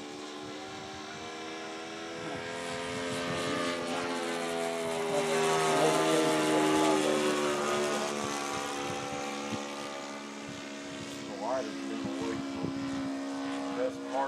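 Radio-controlled P-51 Mustang model's O.S. 95 glow engine droning in flight as the plane passes overhead. It swells to its loudest about halfway through, its pitch falling as it passes, then fades.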